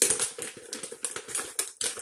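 A bag of dried cranberries crinkling as it is handled and tipped over a mixing bowl: a quick run of rustles and crackles, loudest at the start.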